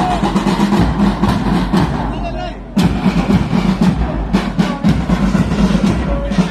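Marching band drums, bass drum included, beating a steady march rhythm. The sound drops briefly and then cuts back in just under three seconds in.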